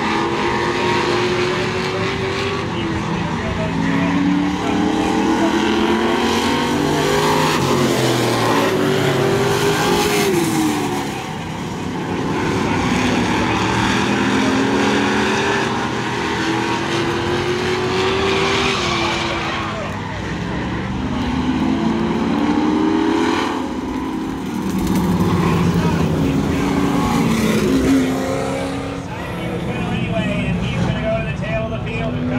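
A pack of street stock race cars' engines revving hard on a short oval, pitch climbing on acceleration and dropping as they lift for the turns. The rise and fall repeats about every nine seconds as the cars lap.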